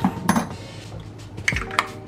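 Metal spoon clinking against the pepper jar and the plastic food container: a few sharp, short-ringing clinks right at the start and again about one and a half seconds in.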